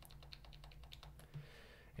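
Faint computer keyboard keystrokes: a quick run of light taps through the first second or so, thinning out after, as the browser page is zoomed in step by step.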